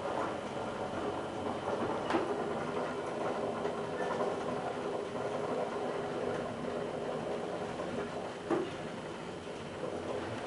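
ASEA high-rise traction elevator car travelling upward, with a steady hum and rumble of the ride heard inside the car. A sharp click comes about two seconds in and another shortly before the end.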